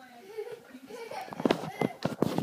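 A child's quick footsteps thumping on a hardwood floor while running off, with faint children's voices.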